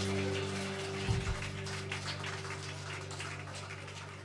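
A band's final chord from amplified guitars and bass ringing out and slowly fading, with an audience clapping over it. There is one low thump about a second in.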